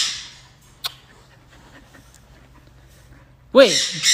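A kiss on the cheek right at the start, a short breathy smack that fades quickly. A single sharp click follows just under a second in, then quiet room tone with a steady low hum.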